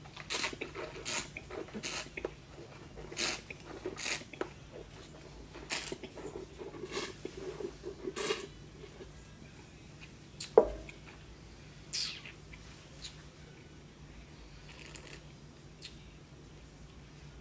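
Wine being tasted: a run of short wet slurps and mouth smacks as it is sipped and worked around the mouth, followed by a single sharp knock about ten and a half seconds in, then a few faint clicks.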